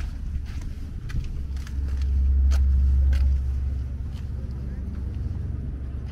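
Footsteps on stone paving, roughly two a second, over a low rumble that swells about two seconds in and eases off again.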